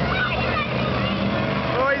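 Engines of several modified racing riding lawnmowers running at speed, a steady drone that shifts slightly in pitch. A spectator's voice comes in near the end.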